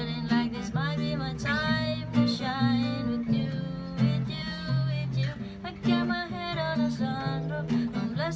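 A woman singing a pop melody over her own strummed Tanglewood acoustic guitar.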